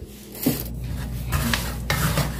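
Wooden spatula stirring and scraping peanuts dry-roasting in salt in a wok: a gritty rasping that starts about half a second in, with a couple of sharper scrapes near the end, over a low steady hum.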